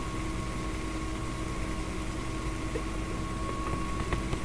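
A steady low hum with a thin, even whine above it, heard as background noise on the meeting's microphone.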